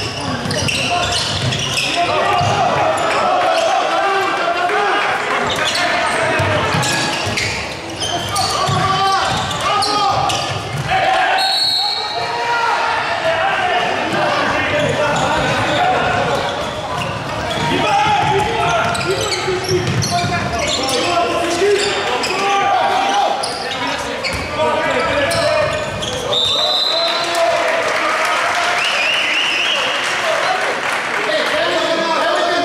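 Handball game in a reverberant sports hall: a handball bouncing on the hardwood court in repeated sharp knocks, with shouting voices from players and spectators throughout. Two short, high whistle blasts come about 12 s in and again near 27 s.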